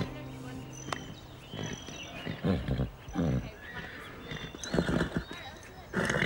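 An Appaloosa horse making short sounds, about five of them spread across a few seconds. Background music fades out in the first second.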